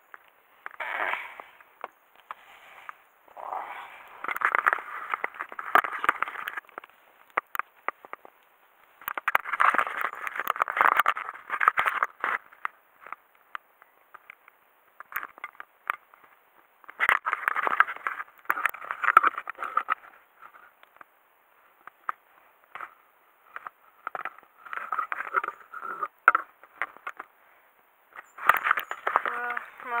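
Rustling and scraping of fabric rubbing over the camera's microphone as it is handled, coming in bursts of a second or two with short gaps and scattered clicks.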